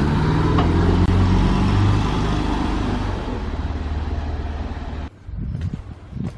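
A car engine running close by, a loud low drone that cuts off abruptly about five seconds in.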